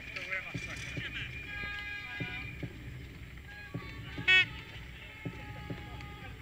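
Racetrack crowd atmosphere: distant voices and a public-address voice with music, with a short, loud pitched blast about four seconds in.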